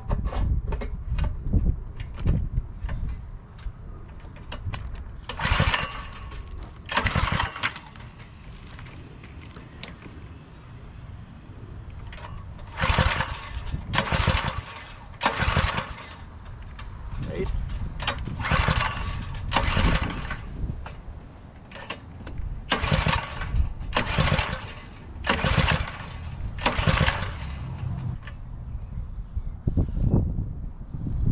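Small single-cylinder gasoline engine on a pressure washer being pull-started over and over, about a dozen quick yanks of the recoil cord in groups. The engine turns over on each pull but does not keep running: it has not yet fired up after sitting for years with old fuel and a freshly cleaned carburettor.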